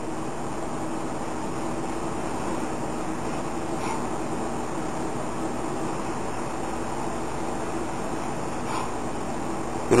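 Steady hum and hiss of running machinery, like an air conditioner, with no clear cutting sounds above it.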